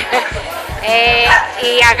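A small Shih Tzu-type dog whines once, high and briefly, about a second in, over music in the background.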